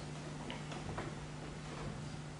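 Quiet room tone with a steady low hum and a few faint clicks, about half a second and a second in.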